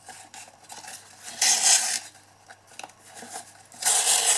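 Ribbon pulled through punched holes in a cardstock box with a threading needle: a loud swishing rustle about one and a half seconds in and another at the very end, with small clicks and soft rustles of card between.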